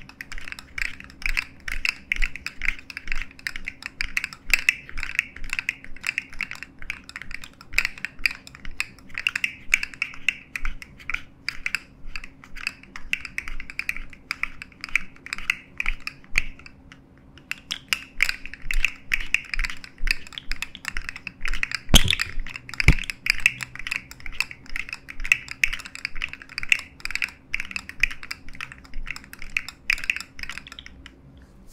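Two articulated plastic fidget slug toys being flexed in the hands. Their segments give a dense, continuous run of fast clicks and rattles. There is a brief pause a little past the middle and one sharper, louder click about three quarters of the way through.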